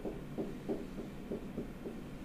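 Pen stylus tapping and stroking on a tablet screen during handwriting: about six soft, irregular knocks.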